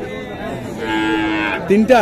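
A cow mooing once: a held call that starts a little under a second in and gets louder, sliding in pitch, near the end.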